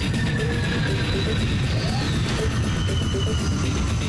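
Cartoon soundtrack music, loud and steady, with a crashing sound effect mixed in.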